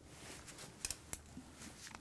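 A few faint metal clicks from a wrench on a valve ball adjuster of a 1972 Mercedes 4.5 litre overhead-cam V8 as the adjuster is turned. The adjuster now moves, having been worked loose.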